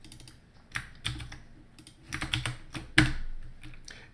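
Keys tapped on a computer keyboard in short scattered clusters of clicks, the loudest single stroke about three seconds in, as a password is entered at an SSH login prompt.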